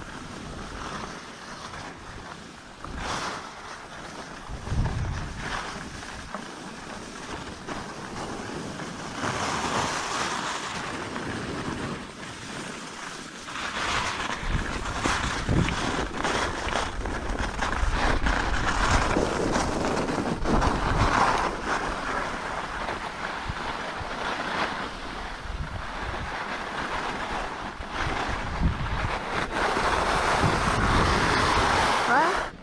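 Wind buffeting a GoPro's microphone together with skis hissing and scraping over packed snow on a downhill run, growing louder as the skier picks up speed about halfway through.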